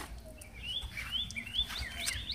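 Small birds chirping: a run of short rising chirps repeating a few times a second, starting about half a second in.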